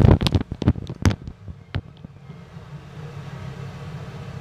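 Inside a moving bus: a quick run of sharp knocks and rattles in the first second and a half, then one more knock, over the bus's steady low running hum.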